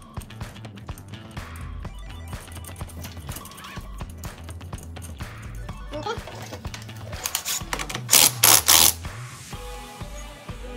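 Background music throughout. About seven seconds in, a cordless impact driver fires in a short burst and then in three quick, loud bursts, running the castle nut down tight onto the splined rear axle of an EZGO golf cart over a new hub and brake drum.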